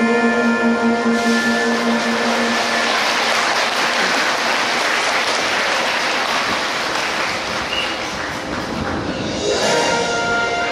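Audience applauding over background show music. The applause builds about a second in, covers the music through the middle, and thins out near the end as the music comes back up.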